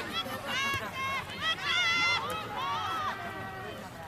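Women's voices shouting short, high-pitched calls across the pitch, one call held longer about one and a half seconds in.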